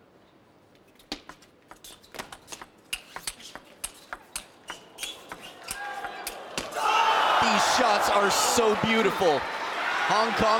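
Table tennis rally: the plastic ball clicking off rackets and table in a quick, irregular run of sharp ticks, several a second. About seven seconds in the rally ends and the crowd breaks into loud cheering and shouting.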